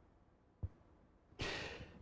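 Near silence with a faint click about half a second in, then a man's audible in-breath through the last half second.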